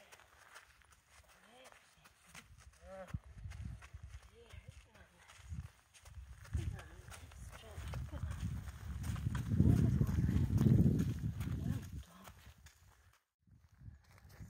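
A horse's hooves stepping on gravel as it is led at a walk, with irregular crunching footfalls, under a low rumble that is loudest about ten seconds in.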